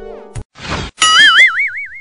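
Cartoon sound effects for a logo animation: a music tail fading out, a short whoosh about half a second in, then a springy boing whose pitch wobbles quickly up and down and dies away near the end.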